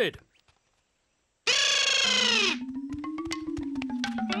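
A cartoon brass horn blast, loud and bright, lasting about a second and sagging in pitch as it ends. It is followed by a quieter low tone that rises and falls, with light taps.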